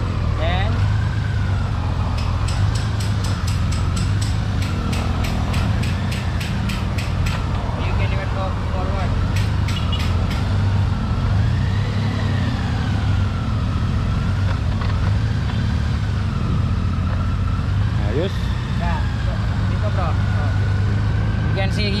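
Honda Gold Wing's flat-six engine idling steadily in its reverse mode. A faint wavering tone rises and falls slowly over the top, and a run of quick clicks comes a few seconds in.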